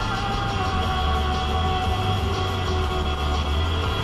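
Music playing on the car radio inside the moving car's cabin, with sustained notes over a steady low hum.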